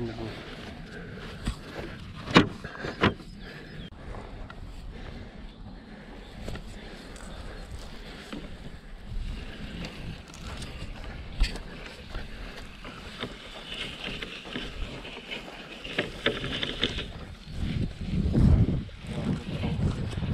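Wind rumbling on a helmet camera's microphone, with a couple of sharp knocks two to three seconds in, another at about the middle, and a louder rumble near the end.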